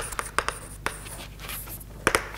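Chalk writing on a chalkboard: a quick run of short taps and scrapes in the first second, growing fainter after.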